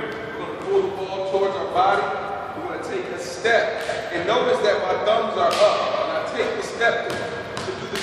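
A basketball bouncing several times on a gymnasium floor, each bounce a sharp slap with an echo, among voices talking in the large hall.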